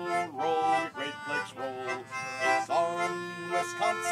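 Concertina playing the tune of a folk song on its own: sustained reedy chords that change every half second or so.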